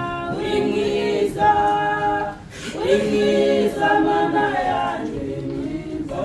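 A group of voices singing unaccompanied in long held notes, a slow hymn, with a short pause between phrases about two and a half seconds in.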